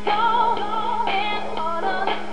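A pop song is playing: a sung lead vocal over electronic backing, played from an iPod through an iDog toy speaker.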